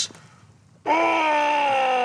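A man's voice imitating a ghostly moan: after a short pause, one long wailing note starts sharply about a second in and slowly falls in pitch.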